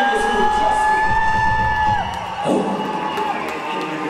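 Audience cheering and whooping, with one long high held scream that ends with a drop about halfway through.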